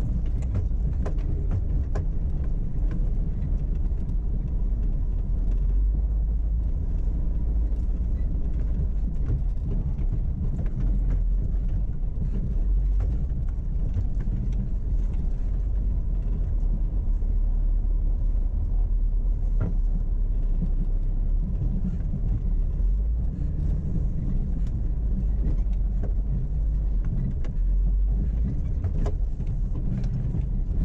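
A four-wheel-drive vehicle crawling slowly over a rocky dirt trail: a steady low engine and drivetrain rumble, with scattered short knocks and clicks from stones and suspension.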